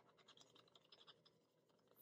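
Near silence with faint, scattered scratching in the first second or so: a pen tip scraping the silver coating off the spots of a paper scratch-off card.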